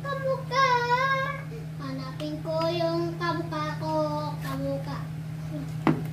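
A child singing in a high voice, over a steady low hum, with one sharp click just before the end.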